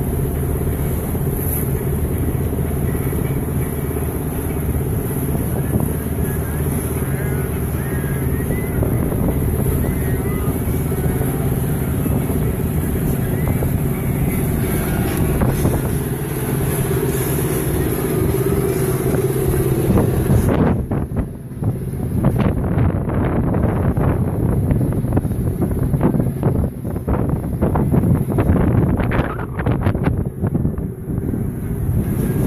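Boat engine running steadily. About two-thirds of the way through the sound changes abruptly and gusty wind buffeting on the microphone joins the engine.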